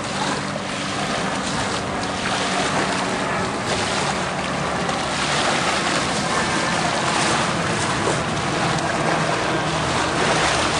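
Small waves washing up on a sandy shore with wind on the microphone, a steady noisy wash, with a faint low steady hum underneath.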